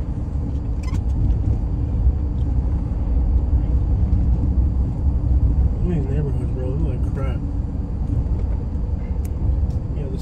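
Steady low road and engine rumble heard inside the cabin of a moving vehicle.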